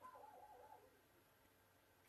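Near silence: room tone, broken in the first second by a faint, brief wavering call.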